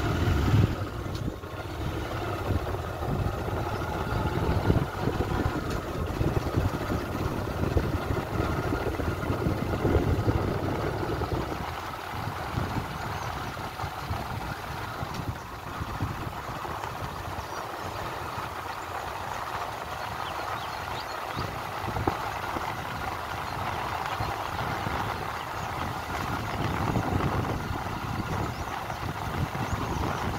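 Engine of a moving road vehicle running steadily, heard from on board, with wind and road noise.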